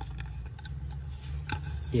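A few small clicks and rubbing as a rubber safety fuse plug is thumbed out through its hole in an aluminium pressure-cooker lid and the lid is handled.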